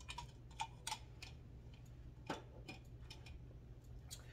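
Quiet room with a steady low hum and a few faint, scattered clicks as a drink is sipped through a straw from a can.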